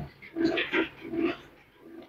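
A man's voice murmuring a few low, indistinct syllables, much quieter than the talk around it, then trailing off about one and a half seconds in.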